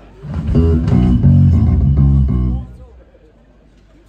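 Electric bass guitar played loud through the stage amplification, a short run of low notes lasting about two and a half seconds that starts a moment in and stops abruptly.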